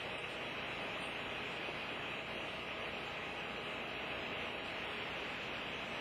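Steady, even hiss with no distinct events: the background noise of the recording, with nothing else sounding.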